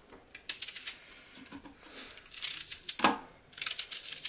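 Peeled onions being dropped into the plastic bowl of a small food processor: scattered light knocks and handling rustles, with one sharper knock about three seconds in.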